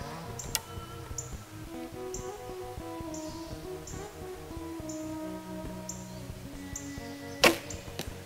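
Background music with a steady beat; near the end, one sharp crack as a traditional bow is shot.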